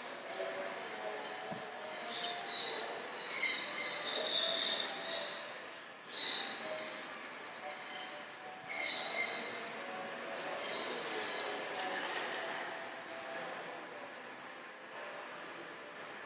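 Small birds chirping in short, high-pitched calls that come in bouts every second or two, fading out over the last few seconds. Faint voices murmur underneath.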